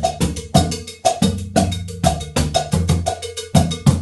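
Three surdo drums played with sticks in a 12/8 rhythm, with a foot-operated cowbell and a hand cowbell clanking along. The rhythm runs in quick, even strikes over deep, booming drum hits.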